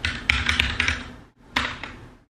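Typing on a computer keyboard: a quick run of keystrokes for about a second, then a short second burst of keys about a second and a half in.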